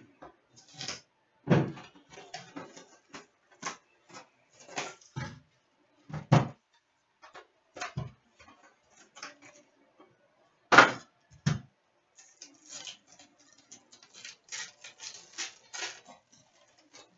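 A cardboard box of trading cards being handled and opened on a glass countertop: scattered knocks and taps, three of them louder, about one and a half, six and eleven seconds in. Near the end a trading-card pack's wrapper crinkles with quick small crackles.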